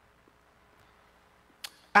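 Near silence: faint room tone in a pause of speech, broken by a single sharp click near the end, just before a man's voice starts again.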